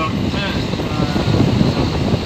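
A moving road vehicle's engine and road noise, heard from inside as a loud, steady rumble.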